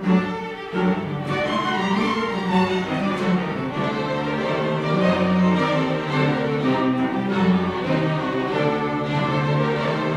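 String orchestra of violins, cellos and other bowed strings playing together, with two sharp accented chords in the first second, then continuous moving lines.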